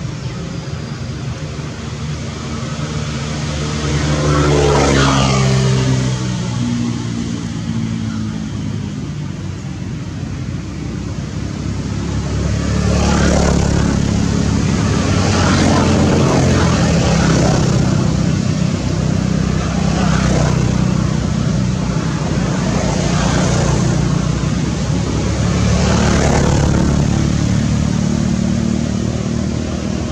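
Road traffic: motor vehicles passing one after another, each swelling and fading as it goes by, over a continuous low engine hum. An engine's pitch falls in steps as one vehicle passes early on.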